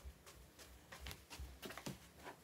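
Faint, irregular footsteps and light knocks as a person walks across a small room, a handful of soft thumps coming closer together in the second second.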